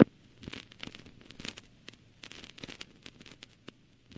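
Faint, irregular crackling and popping like vinyl record surface noise, with no music or voice over it.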